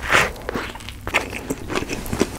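A close-miked bite into a burger with lettuce in a soft toasted bun, loudest right at the start, followed by closed-mouth chewing with quick wet clicks and small crunches several times a second.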